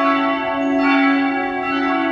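Instrumental music with ringing, bell-like held notes over a low sustained tone, the notes changing every half second or so.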